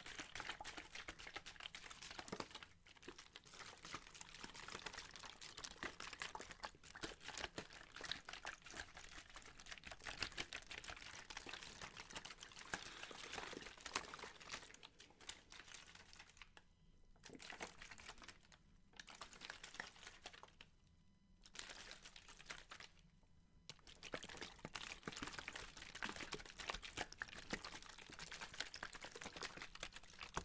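Water sloshing inside crumpled plastic water bottles, with the thin plastic crinkling, close to the microphone: a quiet, dense stream of small splashes and crackles. It breaks off for a few short pauses past the middle, then resumes.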